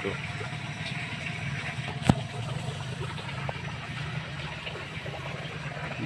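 A small motor running with a steady low hum, and a single sharp click about two seconds in.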